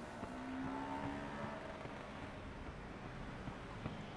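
Street traffic noise from a passing car, its engine tone fading after about a second into a steady hum.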